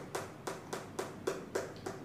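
A fast, even run of faint clicks or taps, about six a second.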